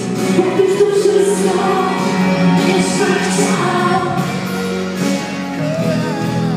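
Live acoustic band performance: a woman and a man singing a duet over acoustic guitar accompaniment, the man taking the lead vocal near the end.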